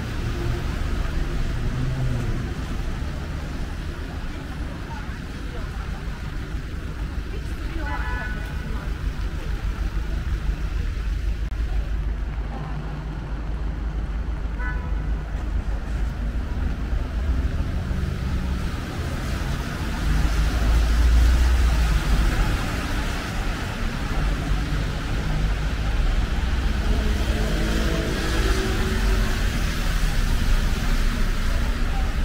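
Road traffic on a city street: a continuous low rumble of passing vehicles that swells loudest about two-thirds of the way through, with people's voices near the end.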